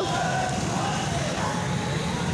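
Steady outdoor street noise with wind rushing over the microphone of a camera carried on a moving bicycle among a crowd of cyclists. The level stays even throughout.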